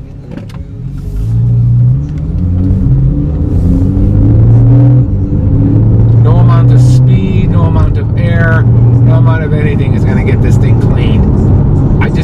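Porsche 911 (991) flat-six engine accelerating, heard from inside the cabin. Its pitch rises, drops and rises again several times as the car pulls away. Voices are heard over it in the second half.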